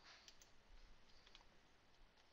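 A few faint computer mouse clicks over low room noise.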